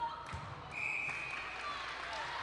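Umpire's whistle blown once, a single steady high tone of just under a second, after two low thumps of the ball or feet on the wooden court near the start.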